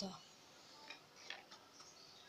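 A steel spoon in a bowl of boiled black chickpeas, giving a few faint, light clicks from about a second in.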